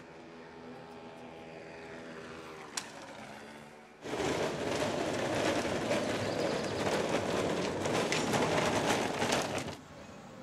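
A faint engine hum from a vehicle on the street, sinking slightly in pitch. About four seconds in, a much louder rough rattling starts suddenly, like a wheeled cart or bin rolled over the street, and stops abruptly just before the end.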